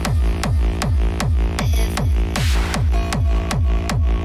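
Hard techno dance music: a fast, steady four-on-the-floor kick drum, about two and a half beats a second, each kick dropping quickly in pitch over a deep bass line, with a short hiss-like swell about halfway through.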